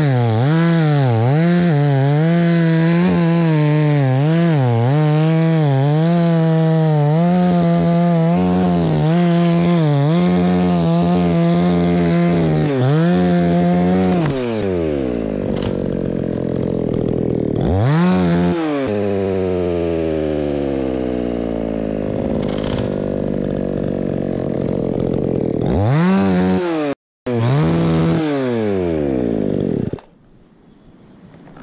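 Two-stroke gas chainsaw held at full throttle cutting through an acacia trunk, its engine note dipping and recovering as the chain bites. About halfway through the throttle is released and the engine winds down toward idle, with short revs twice later on and a brief break in the sound near the end.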